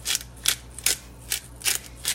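Pepper grinder twisted in short turns, grinding black peppercorns: about five crunchy grinding strokes, two to three a second.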